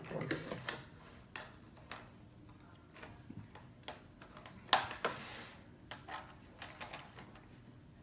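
Scissors snipping at plastic toy packaging, with the plastic being handled: scattered small clicks and snips, the loudest a sharp snap about halfway through followed by a brief rustle.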